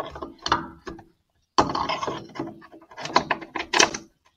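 Electrode drawer of a Yellow Heat oil burner being pushed back into its metal housing by hand: irregular metallic scraping and clicking in several bursts, with a short pause about a second in.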